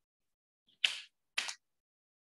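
Two brief, sharp handling noises about half a second apart, with silence between.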